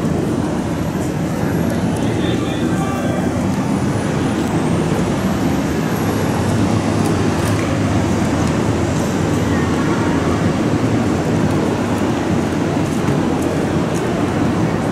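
City street ambience: a steady low traffic rumble, with faint voices of people on the sidewalk now and then.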